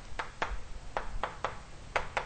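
Chalk tapping and clicking against a blackboard as characters are written: about six short, sharp ticks at uneven intervals.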